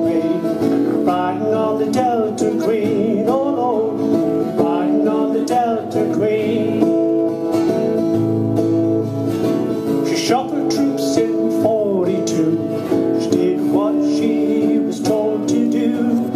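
Two acoustic guitars strumming and picking a folk song, their chords ringing steadily.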